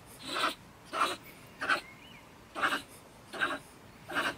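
Stone marten (beech marten) giving five harsh, raspy scolding calls about every three-quarters of a second from its den in a woodpile: the agitated, defensive ranting of a marten that feels disturbed.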